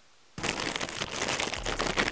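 Foil packet crinkling and tearing as hands work it open: a dense run of crackles that starts abruptly about a third of a second in.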